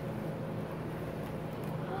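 A steady low hum, with faint crinkling of a foil bubble mailer as a plastic tube is drawn out of it.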